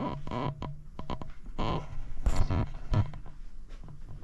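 Handling noise from a camera being carried and turned: rustling and a scattering of small clicks and knocks over a low hum.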